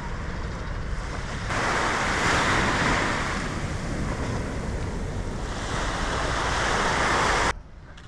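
Small waves breaking and washing up on a sandy beach: a steady rush of surf, with wind rumbling on the microphone. The surf turns louder about a second and a half in and cuts off suddenly near the end.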